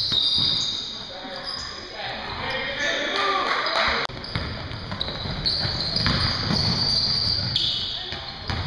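Live basketball game in a gym: sneakers squeaking on the hardwood court and the ball bouncing, under indistinct players' voices in the echoing hall, with an abrupt break about four seconds in.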